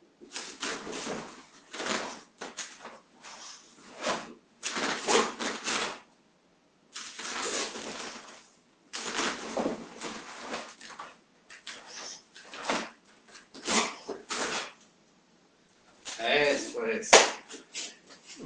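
Karate practitioner working through a kata series in a small room: a string of short, forceful breaths and uniform rustles, one with each technique, separated by brief pauses, with a louder voiced burst near the end.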